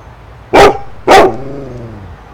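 A dog barking twice, about half a second apart; the second bark trails off into a short drawn-out, slightly falling tone.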